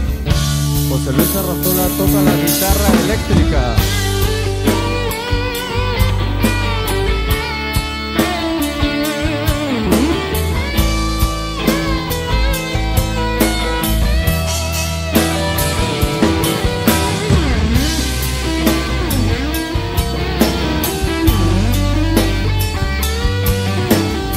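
Rock band playing an instrumental passage live, with no vocals: a guitar lead line of bending, wavering notes over drum kit and bass. The sound is a direct mixing-desk recording.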